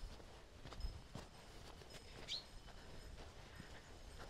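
Quiet outdoor ambience with faint footsteps on a gravel road and one short bird chirp about two seconds in.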